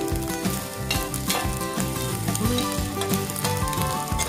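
Fried rice sizzling in a stainless steel pan while a spatula stirs and scrapes through it, with irregular scraping strokes over a steady sizzle. Background music plays along with it.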